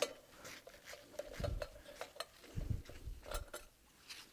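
Screwdriver backing a small screw out of a sheet-metal pump coupling guard: faint, scattered metallic clicks and scrapes of the driver and screw, with a couple of soft handling bumps.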